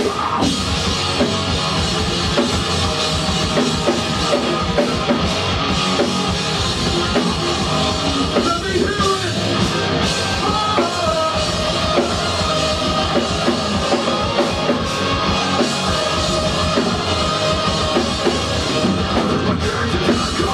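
A metalcore band playing a song live, loud and steady, with a drum kit hitting throughout under distorted guitars.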